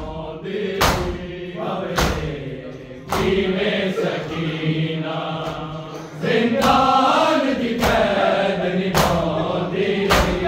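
Men's voices chanting a noha (Shia lament) together, with the massed slap of hands striking bare chests in matam landing in unison about once a second.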